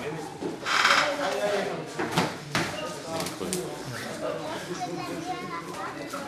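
Spectators' voices in a large hall, with a loud shout about a second in and a few sharp smacks, typical of savate kicks and punches landing, around the middle.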